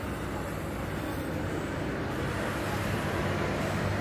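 Steady low rumble with a hiss underneath, with no distinct events and getting slightly louder toward the end.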